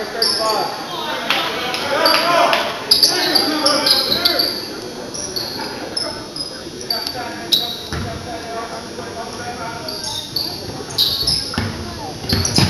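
Basketball game sounds in a gym: a ball bouncing on the hardwood court and sneakers squeaking in short high chirps, over crowd voices, with a sharp knock about eight seconds in.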